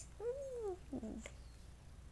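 A toddler's voice, quiet: a short hum that rises then falls in pitch, then a brief soft word about a second in.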